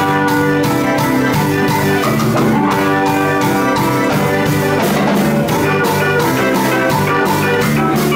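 Live band playing, with electric guitar, keyboard and drum kit over a steady beat.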